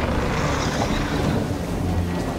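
A steady, wind-like rushing sound effect with a low rumble underneath.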